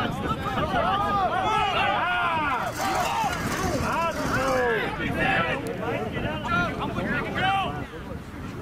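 Several men's voices shouting over one another in short rising-and-falling calls, with no clear words: rugby players calling out around a ruck.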